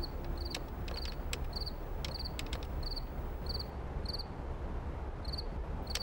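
Crickets chirping as night ambience: a short high chirp about twice a second over a low steady hum, with a few faint clicks.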